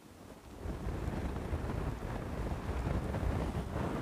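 Wind buffeting the microphone: a low, rumbling noise that builds about half a second in and then holds steady.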